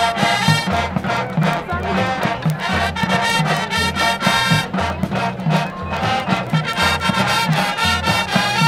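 Brass-led music with a steady beat and a repeating bass line.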